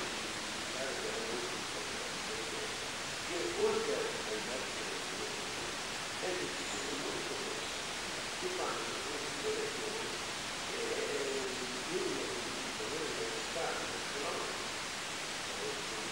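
A faint, muffled voice talking, barely above a steady hiss that fills the recording.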